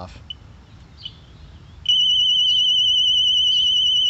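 Husqvarna Automower 115H robotic mower's anti-theft alarm sounding, a high electronic tone with a fast warble. It starts suddenly about two seconds in and holds steady.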